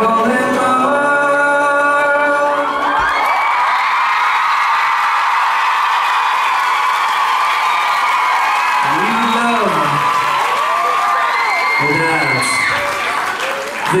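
A live song ends on a held sung note over acoustic guitar. About three seconds in the music stops and a crowd cheers and applauds, with whoops and shouts rising out of the applause.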